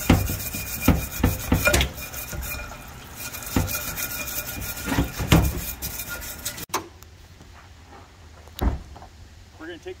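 A metal transmission clutch drum being scrubbed with a stiff brush in a solvent parts washer: bristles scraping on metal and the drum knocking against the washer tray, over the steady hiss of solvent running from the nozzle. The sound cuts off abruptly about two-thirds of the way through, leaving a quieter background with a single thump near the end.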